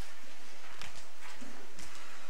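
Scattered, irregular knocks and clicks in a hall with no music playing, from the band and audience moving in the pause after a piece ends.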